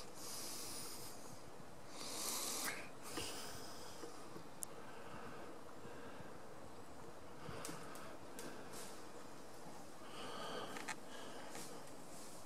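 Faint breathing close to the microphone, a few soft hissing breaths in the first three seconds and quieter ones later, with a couple of faint ticks.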